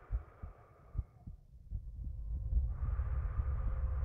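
Slow heartbeat thumps in the soundtrack of a guided space-flight experience. A deep low drone swells in about halfway through and holds.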